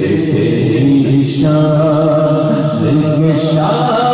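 A man singing a naat (Urdu devotional song) into a microphone, drawing out long held notes; one note is sustained for about two seconds in the middle.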